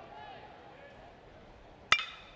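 Faint crowd voices, then near the end one sharp ping of a metal baseball bat striking a pitched ball, ringing briefly; the ball is hit into play on the ground.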